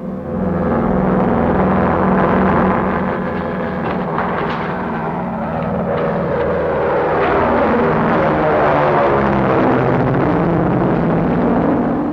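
Propeller airplane engines droning as a plane flies overhead. The sound is loud and continuous, and the engine pitch slides through the middle as the plane passes.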